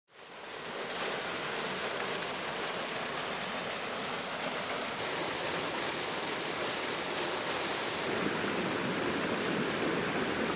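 Running water of a stream pouring over a small fall, a steady rush that fades in at the start and changes in tone twice, about halfway through and again near the end.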